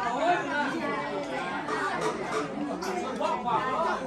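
Several people talking at once: overlapping chatter of voices with no single clear speaker.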